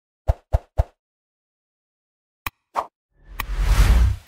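Animated channel-intro sound effects: three quick pops in the first second, then a click and another pop, then a swelling whoosh with a deep rumble building near the end.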